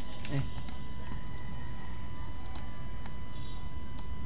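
A handful of scattered computer mouse clicks, single and in quick pairs, over a steady low electrical hum with a faint steady whine.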